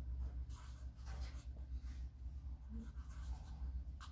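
Pen writing on notebook paper: faint, short scratching strokes over a steady low rumble.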